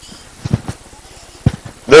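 A few soft, low thumps as a man walks across a floor: about half a second in, again just after, and a stronger one about a second and a half in, over faint room tone.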